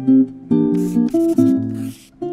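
Acoustic guitar playing a short plucked melody, single notes one after another.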